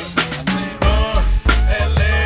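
Music: a 1990s G-funk hip-hop track playing, with melodic lines over a deep bass that comes back in about a second in.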